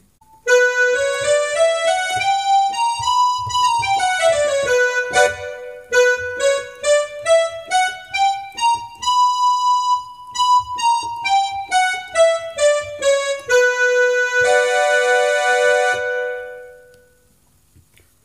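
Yamaha PSR-F52 portable keyboard playing the Keeravani raga scale one note at a time. It goes up an octave and back down, climbs again to hold the top note, descends, and ends on a long held note that dies away near the end.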